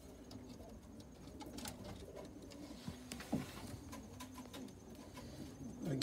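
Inglizi owl pigeons cooing low and drawn-out in a wooden loft, with scattered sharp clicks and taps.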